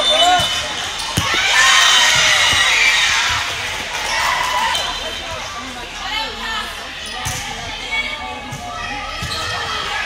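Indoor volleyball game sounds in a large echoing hall: a few sharp ball hits and sneaker squeaks on the hardwood court, under players and spectators calling out. A louder stretch of voices comes about two seconds in, as a rally ends.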